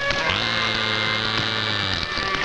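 Electronic film-score drone: a low, buzzing hum with a high whine that slides up as it comes in, about a third of a second in, and is held steady for about a second and a half before it stops. A patter of electronic clicks and blips comes before it.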